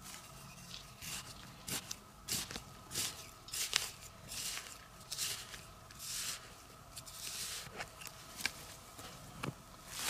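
Loose, dry soil being dug and scraped, with clods of dirt falling and scattering in short irregular scrapes and patters, about one every half second to a second, over a faint steady hum.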